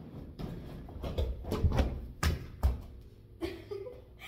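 A gymnast's feet thudding on a floor mat through a run-up and switch leap, with several heavy thumps between about one and three seconds in as she takes off and lands.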